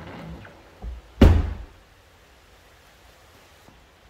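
A soft knock, then one loud, deep thud just over a second in that dies away quickly, like a car body panel or door being knocked or shut; background music fades out at the start.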